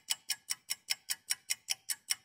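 Clock-ticking sound effect: a run of even, sharp ticks about five a second.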